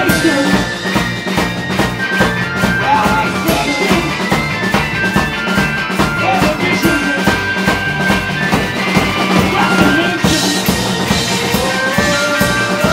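A rock band playing live on electric guitar and drum kit, with a steady drum beat; the cymbals grow louder about ten seconds in.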